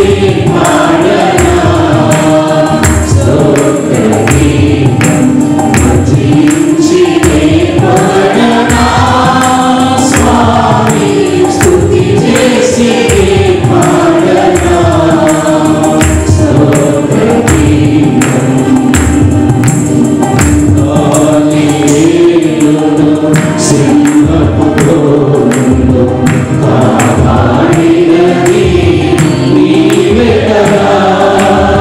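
Mixed choir of men and women singing a Telugu Christian praise song over a steady, regular beat.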